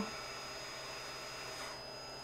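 Faint steady hiss with a thin high-pitched whine running under it.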